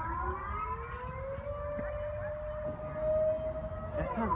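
Outdoor civil-defence warning siren wailing during its monthly first-Monday test; its pitch climbs slowly over about three seconds and then holds steady.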